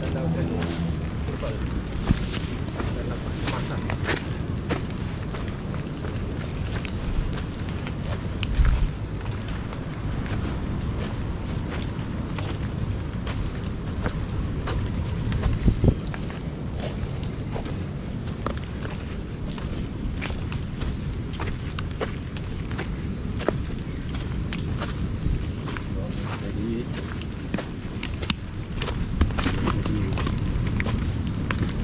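Footsteps on a muddy forest trail, with irregular light clicks and knocks of feet and brushing vegetation over a steady low rumble from the moving, hand-carried camera.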